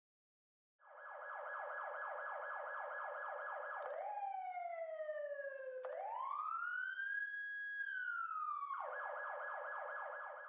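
A siren starting about a second in: a fast warble, then a slow falling glide and a rising, held wail that falls away, then the fast warble again.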